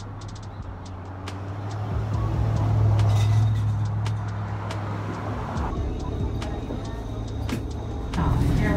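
Low engine rumble of a heavy road vehicle passing close by, growing louder about two seconds in and easing off after about five seconds, over general traffic noise.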